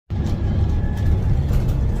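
Steady low rumble of a moving bus's engine and road noise heard inside the passenger cabin, starting right after a brief dropout.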